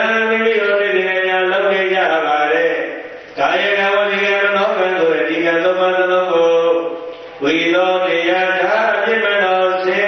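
A Buddhist monk chanting into a microphone in a single voice: three long, drawn-out phrases with slowly shifting pitch, each a few seconds long, separated by short pauses for breath.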